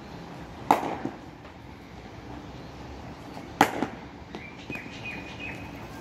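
A hard red cricket ball meeting a cricket bat in two back-foot defensive strokes, about three seconds apart. Each is a sharp knock with a lighter knock just after it, as the ball hits the bat and the concrete floor of the net.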